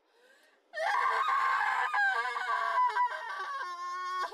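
A woman screaming in terror. The scream breaks out suddenly under a second in and runs on loud, wavering in pitch and catching, then settles into a held, crying wail near the end.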